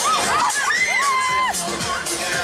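Riders on a swinging pendulum ride screaming and shouting in high voices that rise and fall, with one long scream held for most of a second in the middle.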